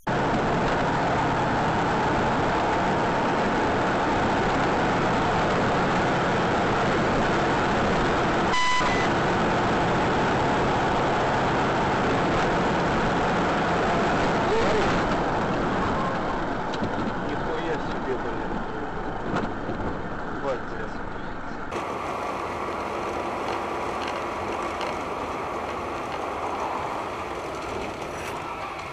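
Steady road and engine noise of vehicles driving, with a short high beep about nine seconds in. The noise turns quieter about halfway through.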